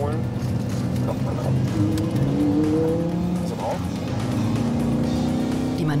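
Car engine accelerating, heard from inside a moving car, its pitch rising about halfway through, under background music.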